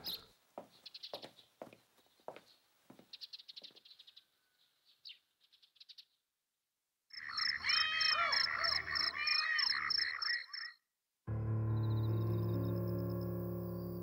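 A chorus of frogs calling: a fast, regular pulsing trill over lower calls that rise and fall, cutting in about halfway through and stopping suddenly a few seconds later, after a few faint clicks. A low, sustained music drone then takes over and slowly fades.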